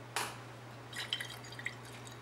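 Faint swishing of water in a glass Erlenmeyer flask being swirled by hand, with a few small drip-like clicks about a second in, as indicator is mixed into a water sample for titration. A steady low hum runs underneath.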